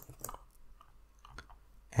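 Faint, scattered clicks of a computer keyboard and mouse as text is copied and the code editor is scrolled.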